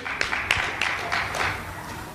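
Congregation applauding: a patter of hand claps that thins out near the end.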